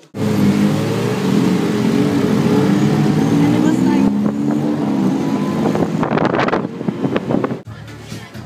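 Tuk-tuk (auto rickshaw) engine running loudly as it drives along, heard from the passenger seat, its note wavering slightly. Near the end comes a stretch of rapid clattering before the sound cuts off suddenly.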